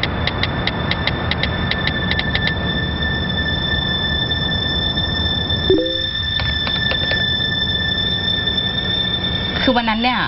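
A high electronic beep pulsing rapidly, about six times a second, then running into one steady held tone about two and a half seconds in, over a low drone. The drone cuts out briefly near the middle, and a few more quick beeps follow.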